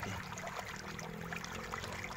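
Steady background hiss with a faint low hum underneath; no distinct event stands out.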